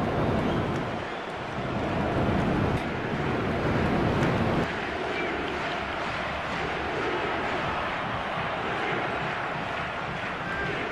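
Steady rushing outdoor noise, with a deep rumble that drops away abruptly about halfway through.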